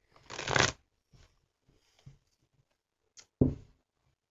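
A deck of tarot cards being shuffled by hand: a loud riffle of the cards about half a second in, quieter rustling, then a click and a second short shuffle near the end.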